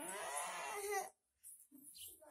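A toddler's whiny, crying vocalisation lasting about a second, followed by a couple of short faint sounds near the end.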